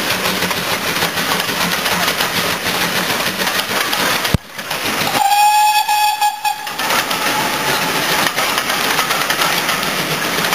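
Steam locomotive working past with its train, then, after a sudden break a little before halfway, the locomotive's whistle sounds one steady note for about a second and a half over the train noise.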